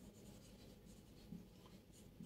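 Marker pen writing on a whiteboard, very faint, with a few small ticks as the tip meets the board.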